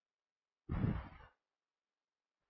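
A man's short exhale or sigh close to the microphone, about half a second long, coming a little under a second in.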